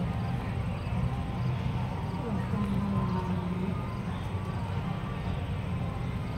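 Outdoor ambience: a steady low rumble, with faint distant voices.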